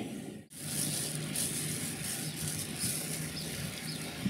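Outdoor background noise: a steady hiss with a faint low hum, cut off briefly about half a second in.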